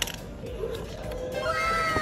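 Music or an edited-in sound effect: a short click at the start, then from about halfway through several tones sliding downward together.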